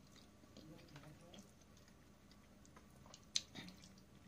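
Faint mouth sounds of someone chewing a mouthful of soft fettuccine, with one sharp click near the end as the fork touches the plastic tray.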